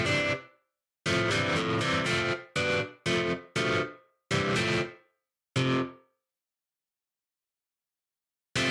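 AAS Strum GS-2 virtual guitar plugin playing an 'Electric Crunch' preset: distorted electric guitar chords strummed in short chopped hits that decay between strokes. The strumming stops about six seconds in and is followed by silence.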